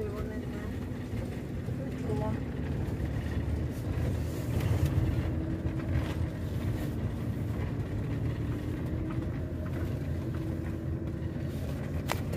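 Motorhome engine and drivetrain heard from inside the cab while driving slowly, a steady low rumble with a faint held tone above it.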